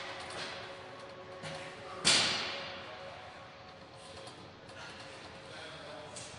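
Room ambience with faint background music, and one loud thud about two seconds in that dies away over about a second.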